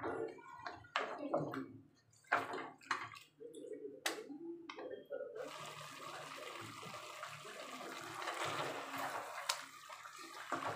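A spatula knocks and scrapes while stirring goat curry in a metal pot. About five seconds in, a steady sizzling hiss of the curry cooking starts suddenly and carries on.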